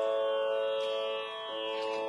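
Steady tanpura-style drone of sustained notes behind a Carnatic vocal recital, with a lower note sounding again about a second and a half in.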